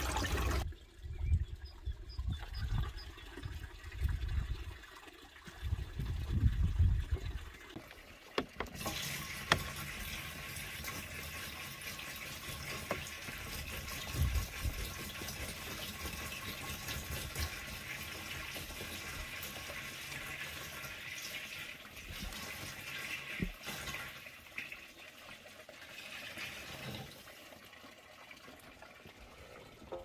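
Spring water pouring from a stone spout into a plastic bottle as it fills. There are low rumbling bumps in the first eight seconds.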